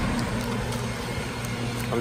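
A steady low mechanical hum, like a motor or engine running, under a low rumbling background.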